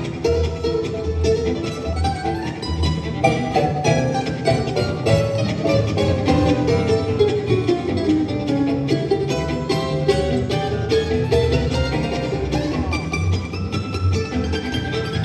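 Bluegrass string band playing an instrumental tune live: banjo and mandolin picking, with fiddle, guitar and bass, in a steady, dense stream of picked notes.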